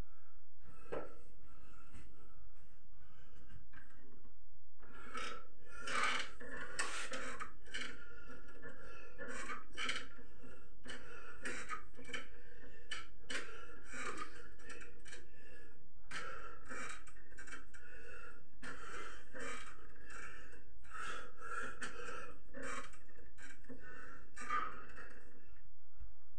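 A man breathing and gasping with exertion during pull-ups on wooden wall bars, in many quick, repeated breaths.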